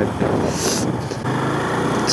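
Motorcycle engine running at low road speed, with wind and road noise on the microphone mounted on the bike; a short hiss about half a second in.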